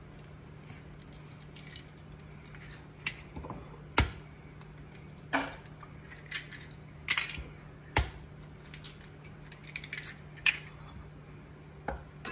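Eggs being knocked and cracked against the rim of a glass measuring cup: about half a dozen sharp clicks and knocks, the loudest about four and eight seconds in, with a faint steady low hum underneath.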